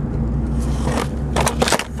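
Steady low road and engine rumble inside a moving car's cabin, with a short cluster of sharp knocks and rattles in the second half as the car goes over rough road and the camera is jostled.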